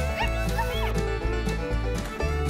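Background music with a steady beat, over which a small dog gives a few short, high barks in the first second.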